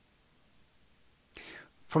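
Near silence in a pause of speech, then a short audible intake of breath about a second and a half in, just before a man starts speaking again.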